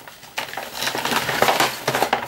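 Cosmetic bottles and tubes clattering and rustling as a hand rummages through them, starting about a third of a second in: a dense run of small clicks and knocks.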